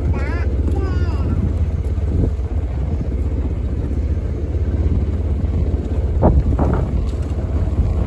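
Low, steady engine rumble of a slow-moving vehicle. A brief wavering call comes in the first second, and two dull knocks about six seconds in.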